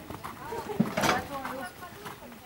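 A horse trotting on a sand arena, heard under people talking nearby, with a short loud burst of noise about a second in.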